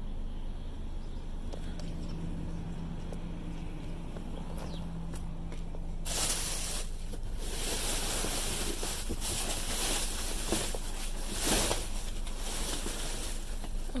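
Plastic trash bags and cardboard boxes rustling and scraping as they are shifted by hand in a dumpster, starting about six seconds in. Before that there is only a low steady hum.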